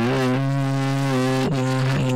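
A male voice chanting Quran recitation over a Skype call, holding one long drawn-out vowel at a steady low pitch, with a slight step up in pitch just after the start.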